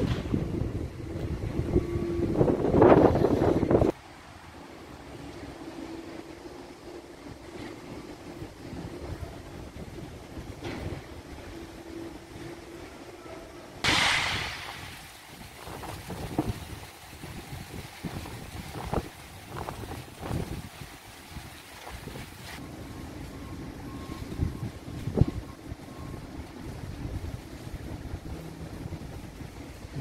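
Wind buffeting the microphone with a faint low hum under it, loud for the first few seconds and then cutting off sharply. After that comes quieter outdoor street background with scattered knocks and a hissing burst that fades over a second or two, about halfway through.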